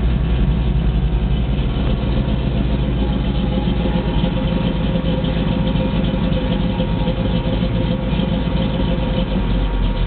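Ford 351 Cleveland V8 of a 1971 Mustang Mach 1 idling steadily while warming up after a cold start, heard from the driver's seat.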